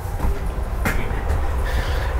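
A man's footsteps stepping up into a small camper trailer, with one sharp knock about a second in, over a steady low rumble.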